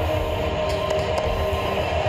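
Dense, steady noise of a huge protest crowd in Tahrir Square, with a few held tones running over a low rumble, from the soundtrack of documentary footage.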